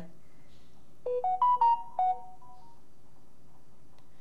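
Smartphone notification tone: a quick run of short chiming notes beginning about a second in and lasting under two seconds.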